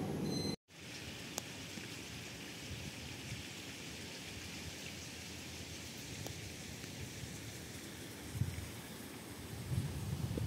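A steady outdoor hiss of water noise, like rain, that starts right after an abrupt cut half a second in. Low gusts of wind bump the microphone about eight seconds in.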